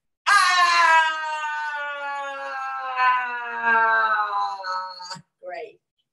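A woman's long, loud "ah!" howl in yoga's lion's pose: a forceful voiced exhalation held for about five seconds, starting loudest and sliding slowly down in pitch, then a short vocal sound just after it ends.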